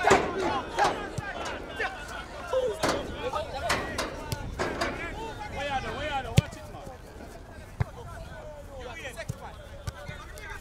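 Players and onlookers shouting across an outdoor football pitch during open play, louder in the first half and thinning out later, with a couple of sharp thumps.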